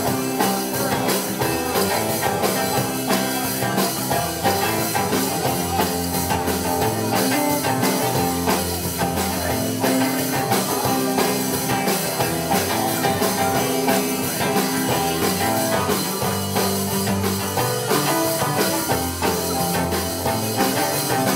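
A live rock band playing: electric guitars, a violin-shaped electric bass and a drum kit keeping a steady beat.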